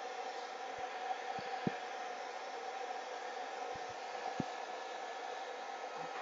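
Pet dryer's blower running steadily through a flexible hose: an even whooshing hiss with a faint steady whine. A few faint taps sound along with it.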